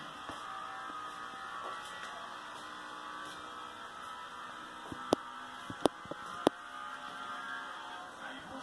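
Steady hum of a room, with a few sharp clicks between about five and six and a half seconds in.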